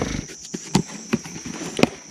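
Cardboard shipping box being opened by hand: soft rustling of the flaps with a few sharp snaps, the loudest about three-quarters of a second in and near the end. A steady high insect buzz runs underneath.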